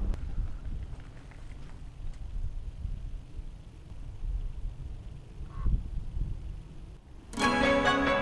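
Low, uneven rumble of wind on the microphone for about seven seconds, with one brief faint higher sound about five and a half seconds in. Near the end, loud background music starts abruptly.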